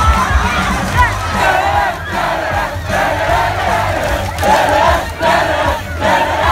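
A large concert crowd singing together in loud phrases with short breaks between them. The band's music is mostly dropped out beneath it.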